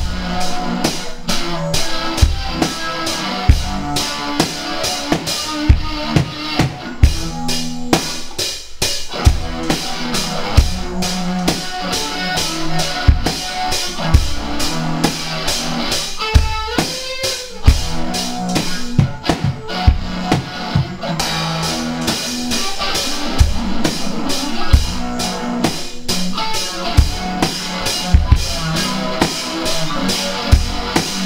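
Instrumental rock jam: a drum kit keeps a steady beat of kick and snare hits under electric guitar and bass played through effects pedals.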